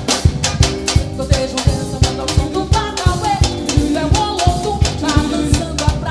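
Recorded song from a band: a drum kit keeps a steady beat under the instruments carrying the melody.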